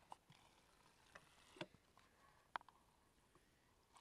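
Near silence broken by a few faint, sharp clicks and taps from paper cups being handled at a drinking-water spout, the loudest about two and a half seconds in.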